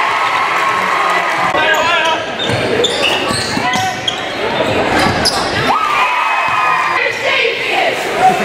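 Basketball bouncing on a hardwood gym court during live play, with many short knocks over a steady din of crowd voices and shouts echoing around the gym.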